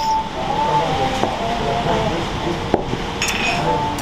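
Bar ambience: a steady background hum of room noise with faint music, and a couple of sharp clinks and knocks from glass beer mugs as they are lifted and drunk from.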